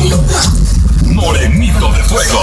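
Loud amplified live concert music with heavy, steady bass, and a voice over it in the second half.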